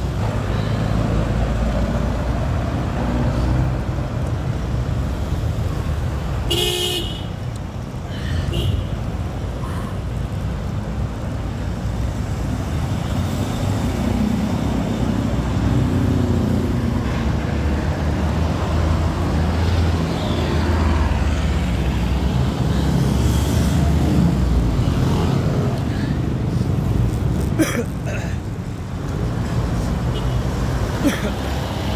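Road traffic heard from a moving bicycle: motor vehicles running nearby with a steady low rumble, and a vehicle horn honks once, briefly, about seven seconds in.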